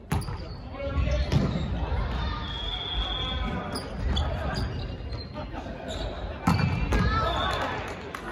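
Volleyball rally in a gym hall: a sharp serve hit right at the start, then more ball strikes as players pass, set and hit, with players shouting during the play.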